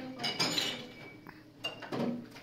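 Dishes and cutlery clinking at a kitchen sink: several sharp knocks with short ringing, a cluster in the first half-second and more near the end.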